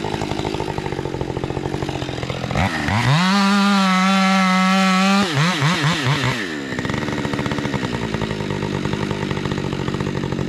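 Husqvarna 550 XP Mark II two-stroke chainsaw idling, then revved up to a steady high-pitched full throttle for about two seconds. It falls back through a few quick throttle blips and settles into idle again.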